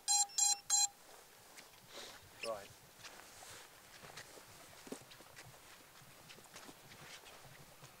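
VIFLY Finder Mini drone-finder buzzer, switched on by hand, giving a rapid string of short beeps, about four a second. It cuts off about a second in.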